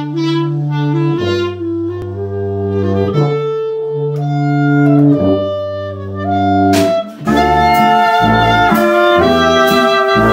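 Small jazz combo of clarinet, trumpet, tuba, guitars and drums playing a slow tune: long held notes over a low tuba line, then about seven seconds in a cymbal crash and the drums bring in a steady beat under the full band.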